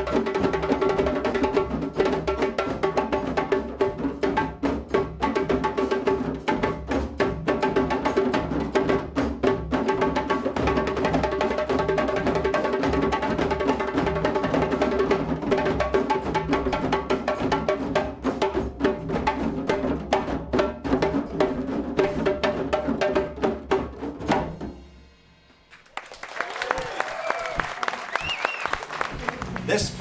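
An ensemble of hand drums played in a steady, busy rhythm under sustained held notes, breaking off about 25 seconds in. After a brief drop, applause and voices follow.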